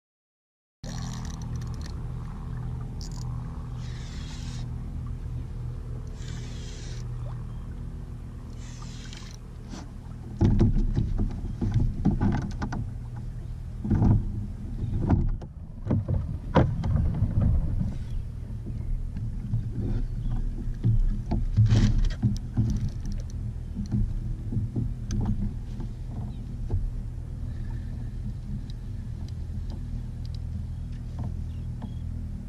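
Sounds aboard a fishing kayak on open water: a steady low hum, then louder irregular knocks and water slapping against the hull from about ten seconds in.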